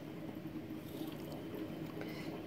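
Faint, steady running water and equipment hum of a reef aquarium: circulating water with a low, even pump drone.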